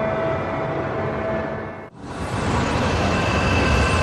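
A steady rumbling noise with faint held tones. About two seconds in it breaks off for an instant and gives way to a louder, deeper rumble: an icebreaker ship driving through sea ice.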